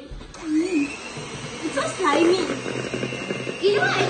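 Electric hand mixer running with its beaters in cake batter, its motor whine rising about a second in and then holding steady.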